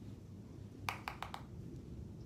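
Four quick, light clicks about a second in from handling a makeup brush against an eyeshadow palette, over a faint low rumble.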